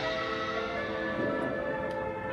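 Marching band playing a soft, sustained passage of held notes, with bell-like ringing tones from the front-ensemble percussion.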